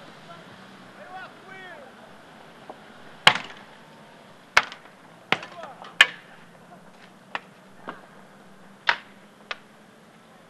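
A series of about eight sharp bangs, irregularly spaced from about three seconds in to near the end, each with a short echo, the loudest of them around three and six seconds in. Shouting in the first two seconds.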